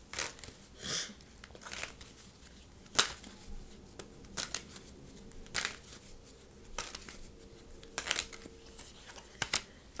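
A deck of tarot cards being shuffled by hand: irregular soft slaps and riffles, spaced out, some sharper than others.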